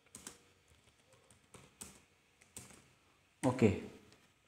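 Computer keyboard keystrokes: a few separate key presses spread over about three seconds, then a spoken "okay" near the end.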